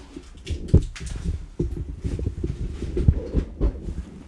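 Irregular light knocks, clicks and rustling of handling noise as things are moved about on a workbench.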